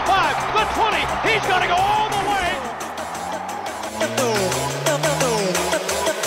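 Electronic background music, with excited crowd shouting and cheering over the first couple of seconds. From about halfway, a low tone rises steadily in pitch as the music builds.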